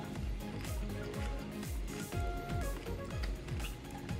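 Background music with a steady beat and deep bass notes that slide down in pitch over and over.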